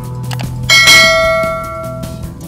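A single bright bell-like ding about two-thirds of a second in, ringing out and fading over about a second: the notification-bell sound effect of an on-screen subscribe-button animation, over background music.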